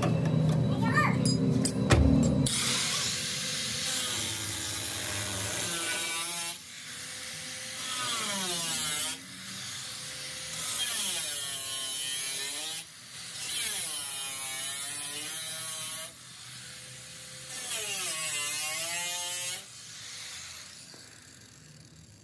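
Angle grinder with a cutting disc cutting car body sheet metal along the rocker panel, in a series of passes a few seconds long; its motor pitch sags as the disc bites and rises again between cuts. A single knock comes about two seconds in, just before the cutting starts.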